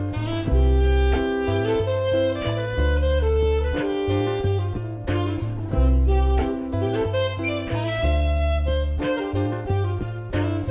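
Alto saxophone playing a melodic jazz-style line over an accompaniment of plucked strings and a bass line that changes every couple of seconds.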